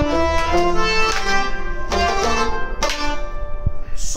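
Kashmiri folk music, an instrumental passage between sung lines: a rubab plays a stepping melody of held notes, with a few sharp percussion strokes from the hand drums or clay-pot nout.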